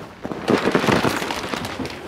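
Rustling, crackling noise of a travel trailer's bed platform and its bedding being lifted to open the storage box underneath, starting about half a second in.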